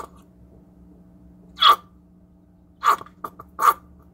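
Two-ounce paint squeeze bottle squeezed nearly empty, sputtering air and paint out of its nozzle in three short bursts, the first the loudest, with faint clicks in between.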